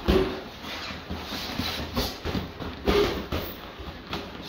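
Boxing gloves landing in close-range sparring: a string of irregular sharp thuds, with a couple of short forced breaths as punches are thrown.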